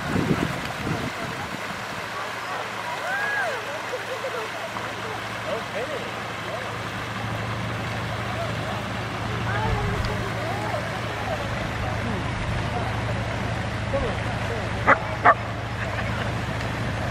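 Distant chatter of several people over a steady low hum, and a dog barking twice in quick succession near the end.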